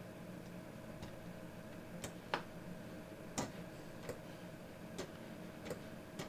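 Scattered single clicks of a computer mouse, about seven spread unevenly over a few seconds, with a faint steady hum underneath.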